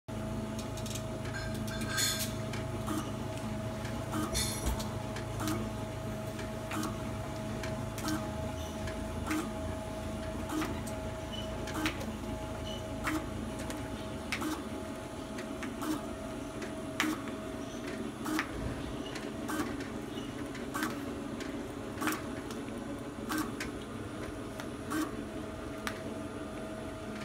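AP100 automatic labeling machine with an L261 feeder running: a steady motor hum and whir, with a sharp click repeating evenly about every second and a quarter as the items cycle through.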